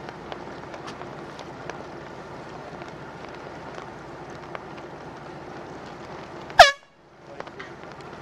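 A single short, very loud air-horn blast about six and a half seconds in, its pitch sagging as it sounds, over a steady hiss of wind. It is the kind of blast a race committee gives as a racing yacht crosses the finish line.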